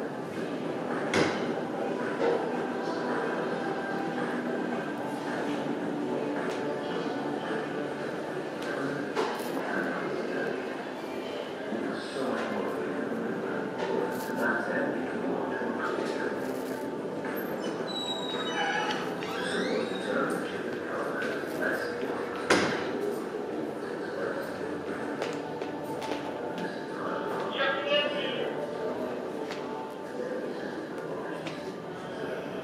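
Indistinct chatter of many people echoing in a large hall, with a few sharp knocks, the loudest a little past the middle.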